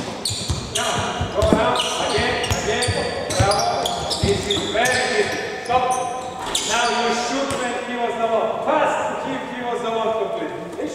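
Basketball bouncing on a hardwood gym floor during a live drill, a series of short thuds that echo in a large hall, with voices calling over them.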